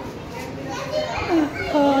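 Children's voices, high-pitched talk and calls, growing louder about a second in and ending on a drawn-out "oh".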